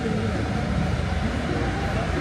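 Commuter train passing, a steady low rumble with no breaks, under faint distant voices.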